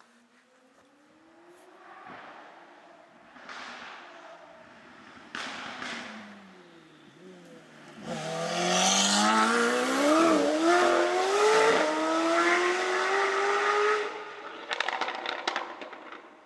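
A McLaren supercar's twin-turbo V8 is heard approaching while accelerating, its note climbing through gear changes. It is loudest as it drives past about eight seconds in, then the pitch climbs as it pulls away, with a burst of crackles near the end.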